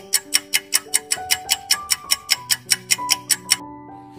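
Countdown-timer sound effect: quick, even clock ticks, about five a second, over a soft music bed. The ticking stops about three and a half seconds in, when time is up.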